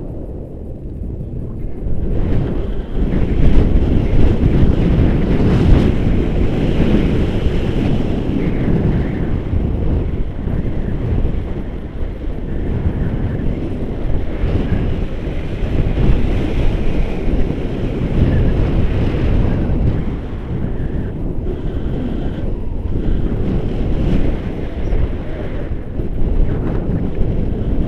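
Wind buffeting the camera microphone in flight under a tandem paraglider: a loud, gusting rumble, a little quieter for the first two seconds and then rising and falling.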